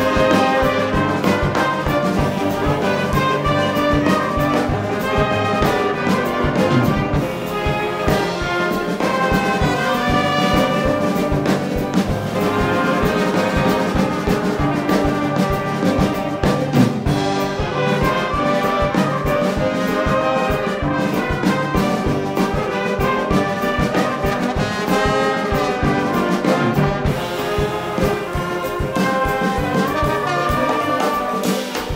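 Band of trombones, trumpets and saxophones with a drum kit playing a fast-paced, Middle Eastern-flavoured tune with a steady driving beat.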